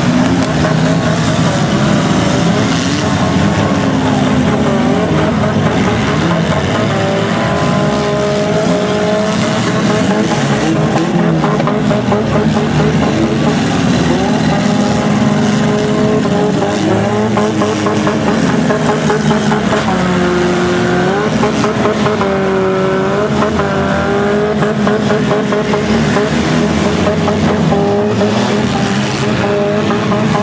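Engines of several compact demolition-derby cars revving and running hard together, their pitches rising and falling as they accelerate, back up and ram each other.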